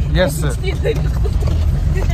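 Steady low rumble of a van's engine heard from inside the cabin, with passengers' voices over it.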